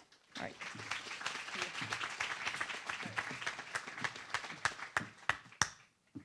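Audience applauding, thinning out to a few last separate claps near the end.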